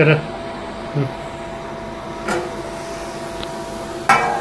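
Induction cooktop's cooling fan humming steadily with a faint whine. Three brief soft sounds break in: at the start, about a second in, and just past two seconds.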